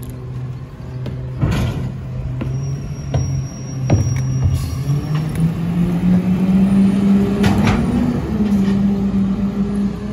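Rear-loading garbage truck's engine idling, then speeding up about halfway through and holding the higher speed as the hydraulic packer cycles and clears the hopper. A few sharp knocks from bags and cans being loaded.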